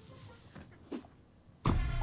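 A quiet stretch with a few faint, brief sounds, then a loud voice breaking in with an exclamation near the end.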